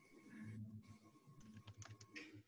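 Near silence with faint computer keyboard typing, the key clicks more distinct in the second half.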